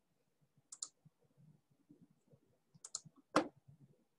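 A few short, sharp clicks from computer controls on a near-silent background: a pair about a second in, another cluster near three seconds, and the loudest single click just after that.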